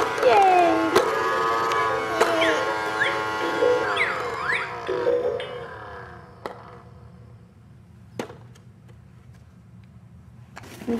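A baby's battery-powered air ball-popper toy playing its electronic tune, with a baby babbling over it; the tune fades out about five or six seconds in. A few sharp plastic clicks follow in the quieter stretch.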